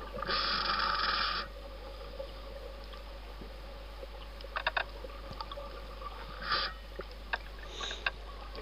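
Scuba diver breathing through a regulator underwater: a hiss of about a second, starting about half a second in, and a shorter one about six and a half seconds in, with a few faint clicks between.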